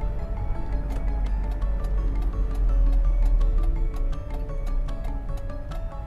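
Background music: a melody of held notes over light, regular ticking percussion, with a steady low rumble underneath.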